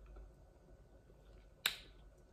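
A single short, sharp click near the end, against quiet room tone.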